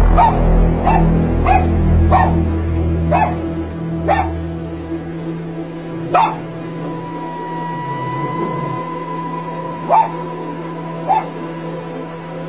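A dog barking: a quick run of about six barks, then three more single barks spaced a few seconds apart, over background music.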